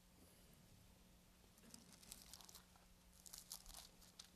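Near silence, with faint rustling and crinkling of thin Bible pages being turned, clustered between about two and four seconds in, over a low steady hum.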